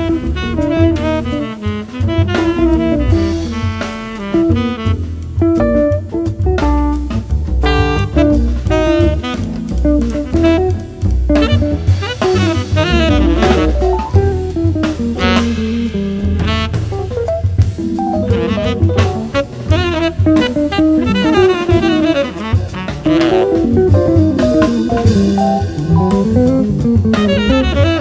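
Jazz group playing: saxophone and guitar lines over bass and drum kit, with no break.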